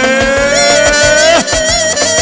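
Albanian folk dance music played by a band: a long held lead melody note that slides slightly upward and breaks off partway through, over a steady low drum beat.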